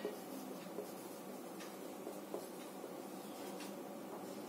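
Marker pen writing on a whiteboard: a series of faint, short strokes and taps as words are written.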